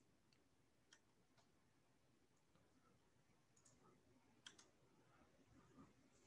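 Near silence with a few faint, isolated clicks.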